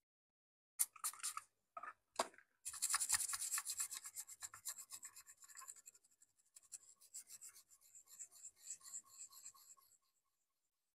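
A small stiff-bristled brush scrubs the solder side of a printed circuit board, cleaning the pads after desoldering. First come a few separate scratchy strokes, then rapid back-and-forth scrubbing from about three seconds in, loudest at first and growing fainter.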